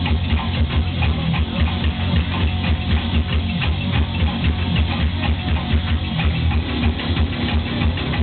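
Live music played on the Magic Pipe, a homemade steel-pipe instrument with a bass string: a rapid, pulsing low bass line with clicking percussion over it.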